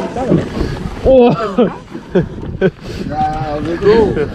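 Mostly speech: people talking in short phrases over a steady low background noise.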